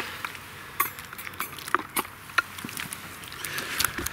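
Scattered light clicks and knocks as a bucket of fish is hooked onto a digital hanging scale and lifted.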